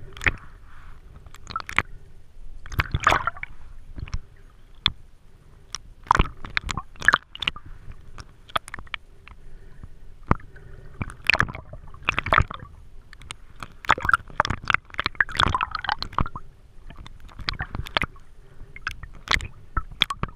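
Water gurgling and sloshing, heard underwater by the camera, with many irregular sharp clicks and crackles and uneven bursts from swimming movement.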